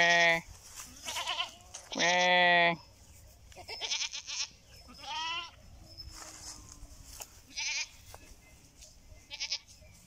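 Goats bleating, about seven bleats in all. Two are loud and drawn out, at the start and about two seconds in. Then come shorter, thinner, wavering bleats every second or two.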